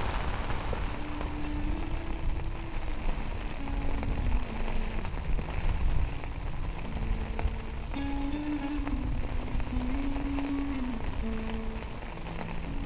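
Steady rain falling, with a slow melody of held low notes coming in about a second in.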